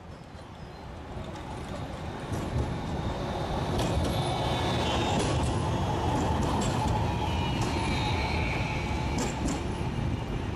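A tram passing close by: a steady rumble that grows louder over the first few seconds as it comes near, with high wheel squeal from the rails and scattered clicks.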